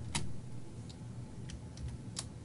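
Computer keyboard: about four separate keystrokes, spaced out, the first the loudest.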